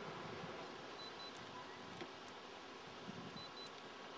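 Faint steady background noise with a few soft clicks.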